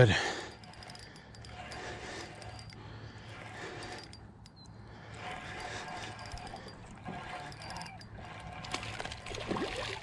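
Spinning reel being cranked while fighting a hooked smallmouth bass on a spinning rod. Near the end the bass splashes at the surface beside the boat.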